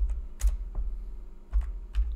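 A few separate keystrokes on a computer keyboard, irregularly spaced, as a short shell command is typed and corrected, with a low rumble underneath.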